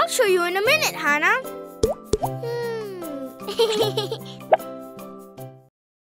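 Children's cartoon music with high, sliding cartoon voices and a few sharp pops, cutting off abruptly near the end.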